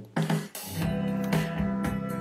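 Music with guitar played back by a cheap USB MP3/WAV decoder module through an amplifier and speaker. It starts up as soon as power is applied.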